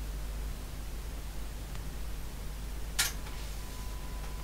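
Steady low hum of a running Cromemco System 3 on the bench, its fans and power supply. A single sharp click about three seconds in is a key being struck on the terminal keyboard to prompt the machine to boot. A faint steady high tone starts just after the click.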